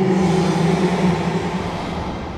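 Cartoon monster roar sound effect: one long, loud, low roar at a steady pitch, easing off slightly near the end.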